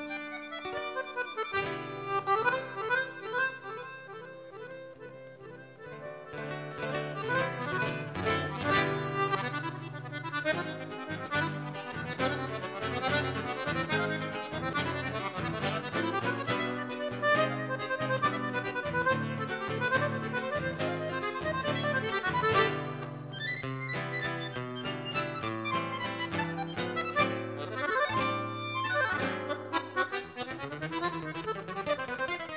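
Duo of a Crucianelli chromatic button accordion and a nylon-string guitar playing a lively Paraguayan polka, the accordion carrying the melody over the guitar. The music is softer for a few seconds near the start, then fuller.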